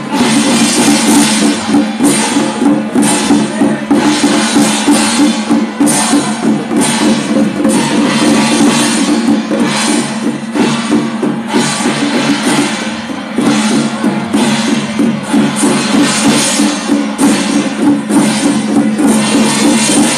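Loud Chinese temple ritual music: drums and percussion strike a steady beat over a sustained low tone, with a brief drop in loudness about 13 seconds in.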